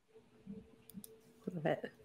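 A few faint, short clicks over a faint steady hum, then a brief spoken "I" near the end.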